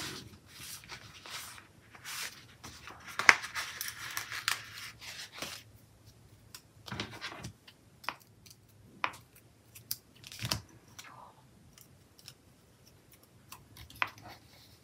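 Paper sticker sheets being handled on a desk: soft rustling and brushing for the first several seconds, then scattered light taps and clicks as a sticker is placed on a planner page.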